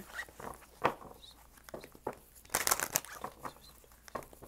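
A deck of tarot cards shuffled by hand: soft flicks and rustles of the cards sliding against each other, with a denser run of shuffling a little past halfway.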